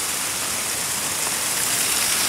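Fountain jets splashing into their basin: a steady, even rush of falling water.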